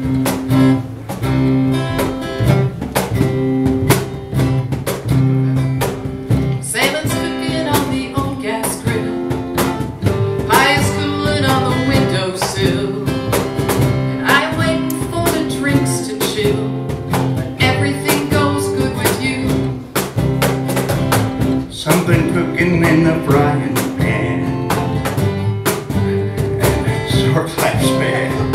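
Live acoustic Americana band playing a song's instrumental intro: strummed acoustic guitar, upright bass and cajon keep a steady beat. A melody line comes in over them about seven seconds in.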